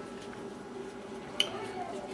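Quiet kitchen room tone with a faint steady hum, and one small click about a second and a half in.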